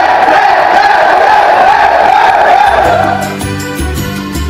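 A group of men singing and shouting together in a loud celebration chant. About three seconds in it fades under background music with a bass line and a steady beat.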